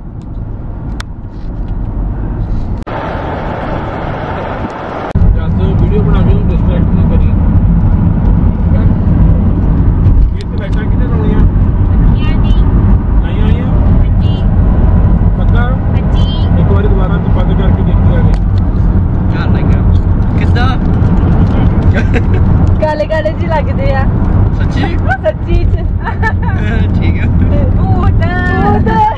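Road and engine noise inside a moving car's cabin: a steady low rumble that gets suddenly louder about five seconds in, with indistinct voices now and then.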